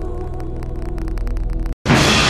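Trailer sound design: a low droning hum under a fast, even ticking pulse. It cuts out suddenly near the end, and a loud hit follows.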